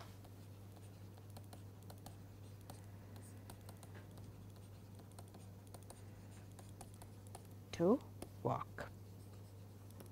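Faint tapping and scratching of a stylus writing on a tablet screen, many small clicks in quick succession, over a steady low electrical hum.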